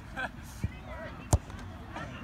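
A soccer ball struck once with a sharp, loud smack a little past halfway, over children's voices.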